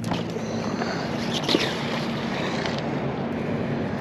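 Steady outdoor wind noise with a low steady hum beneath it while a fishing magnet is thrown out on its rope from a railing over the water, and one short faint sound about a second and a half in.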